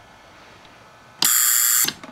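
Magnetically quenched spark gap of a Tesla hairpin circuit firing: a loud, harsh, hissing buzz that starts suddenly about a second in, holds steady for under a second, and cuts off abruptly.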